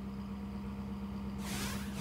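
A steady low hum under faint background noise, with a brief high whooshing hiss about a second and a half in: a broadcast graphic transition sound.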